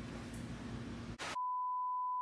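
Faint room tone, then a short burst of noise and a steady high-pitched test-tone beep, the kind that goes with TV colour bars, starting about a second and a half in.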